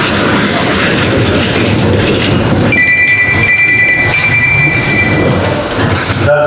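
A roomful of people sitting down together: chairs scraping and moving, with shuffling and rustling as a dense, even noise. A thin, steady high-pitched tone sounds from about three seconds in to about five.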